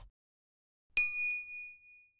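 A single bright ding, a bell-like chime sound effect from a subscribe-button animation, marking the notification bell being switched on. It strikes about a second in and rings out for about a second.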